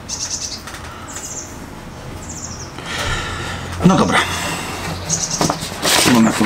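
A small bird chirping outdoors: three short, high trilled calls in the first three seconds over a steady background hiss.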